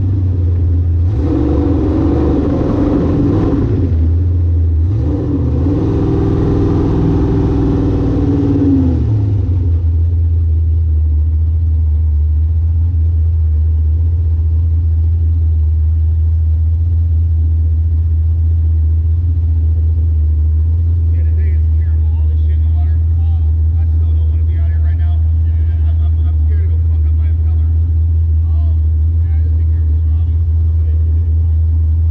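Jet boat's engine running at speed with a loud rush of noise, then backing off about nine seconds in, its note falling as the boat slows. It settles to a steady low idle.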